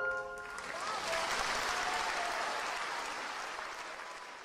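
A song's last held note ends, and a concert audience breaks into applause that holds steady and begins to fade near the end.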